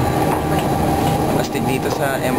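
Indistinct voices over the steady hum inside an MRT train carriage stopped at a station with its doors open.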